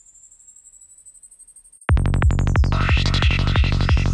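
Electronic hi-tech psytrance playing back from a production session. A quiet, high synth riser builds in level, then about two seconds in the drop hits with a steady pounding kick drum and rolling bass, topped by a fast stuttering high synth whose filter sweeps down.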